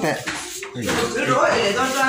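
Pots, dishes and cutlery clattering, with people talking over it.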